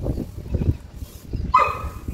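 Hands crushing and crumbling dry, gritty soil and sand on concrete: a run of soft crunches and thuds. About one and a half seconds in, a short pitched animal call cuts in over them.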